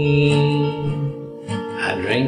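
Acoustic song on an Alvarez acoustic guitar: a long held note rings out, then a fresh strum comes in near the end.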